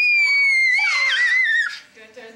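A young boy's long, high-pitched scream, held as one shriek that slowly falls in pitch, wavers and breaks off shortly before the end.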